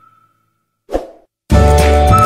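Background music drops out. About a second in comes a single short pop sound effect, like a subscribe-button pop. Half a second later the music returns: a flute-like melody over a steady beat.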